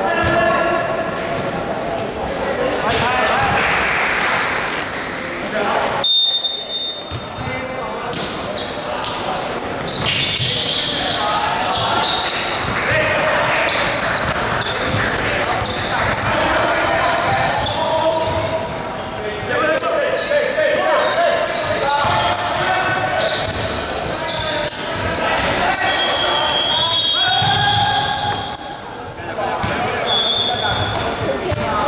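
Basketball bouncing on a wooden gym court during play, with players' voices calling out, echoing in a large sports hall.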